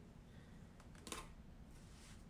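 Near silence: room tone, with one faint, brief tap about a second in from hands handling the sequined knitted cord on the tabletop.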